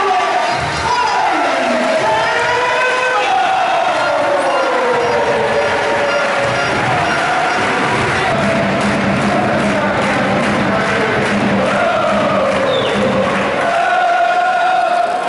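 Basketball arena crowd cheering and singing, with music playing.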